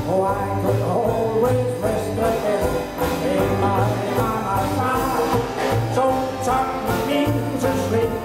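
Traditional New Orleans-style jazz band playing live, with piano and strummed banjo over string bass and drums, and a steady beat.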